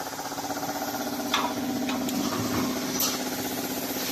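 Automatic steel wire mesh welding machine running: a steady mechanical hum with a fast, even rhythmic chatter, and a few sharp clicks, one a little over a second in and others around two and three seconds in.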